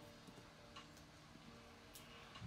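Near silence: room tone with a faint steady hum and two faint clicks.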